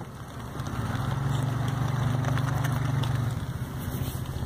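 Car engine running with a steady low hum that swells about half a second in and eases off near the end.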